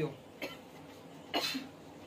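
A person coughing: a few short coughs, the loudest about a second and a half in.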